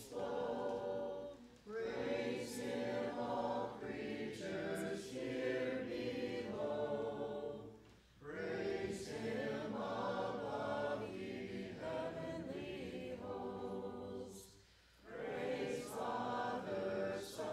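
Congregation singing a hymn together, line by line, with short breaks between the lines about every six or seven seconds.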